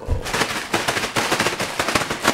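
Plastic bag crinkling and crackling rapidly and irregularly as it is handled and pulled at to undo a tight knot.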